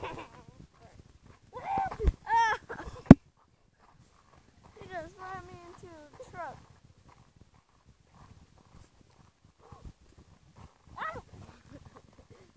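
Kids' voices laughing in a few short spells, with two sharp knocks about two and three seconds in, the second the loudest sound.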